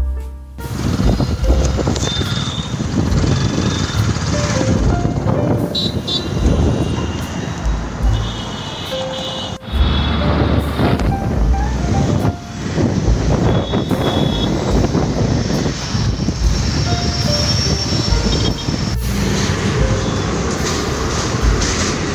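Road traffic noise picked up on a phone, a dense, loud rumble with a few short high tones in it, breaking off and starting again a few times.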